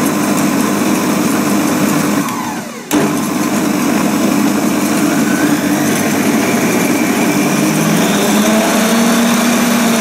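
Moulinex Masterchef 750 Duotronic food processor's 500 W motor running with a steady hum. A little after two seconds in it winds down with a falling whine, then starts again abruptly just before three seconds and runs on steadily.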